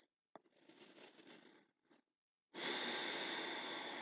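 Quiet breathing of a woman holding a yoga pose: a faint click early on, a short stretch of silence, then a steady breathy hiss for the last second and a half.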